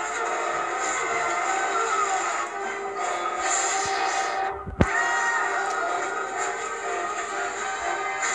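Film soundtrack music playing from a television's speaker, with many sustained tones. Just past halfway the music drops out for a moment, then a single sharp hit comes before the music resumes.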